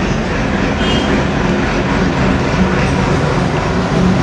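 Steady running noise of a moving vehicle, recorded from inside it, with a brief high beep just under a second in.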